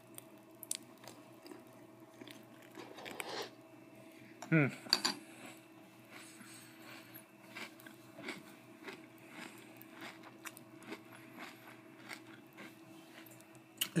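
A person chewing a mouthful of Kellogg's Special K flakes soaked in milk: faint, irregular soft crunches, not very crunchy.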